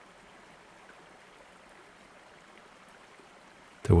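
Faint, steady rush of running water, like a stream or waterfall ambience bed, with no other events; a man's voice starts right at the end.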